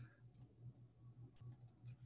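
Near silence with a few faint clicks from a computer's input devices, several of them close together near the end.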